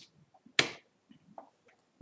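A few clicks from a computer keyboard and mouse, one much louder than the rest just over half a second in, with faint ticks between them.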